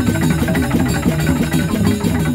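Traditional dance music played by a percussion ensemble: quick repeated pitched notes over a steady rhythm.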